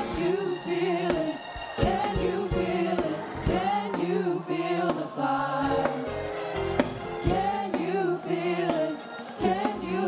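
Gospel music: a choir singing over instruments with a steady beat.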